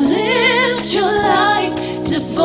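Live gospel singing: a lead voice holds and bends long notes with a wide vibrato over sustained instrumental chords from the band.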